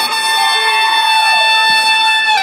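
A steady, high-pitched, horn-like electronic tone with overtones, held for about two seconds through the stage sound system and cut off suddenly just after the end.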